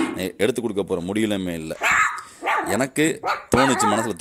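Kanni puppies barking in short, high calls, mixed with a person talking.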